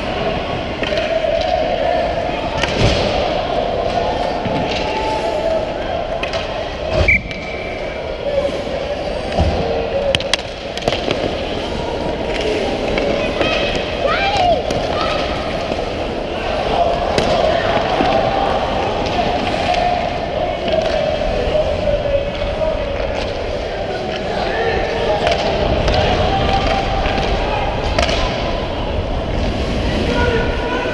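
Youth ice hockey game in an echoing rink: skate blades scraping on the ice close by, and indistinct shouting voices. Sharp clacks of sticks and puck on ice and boards come now and then, several within the first ten seconds.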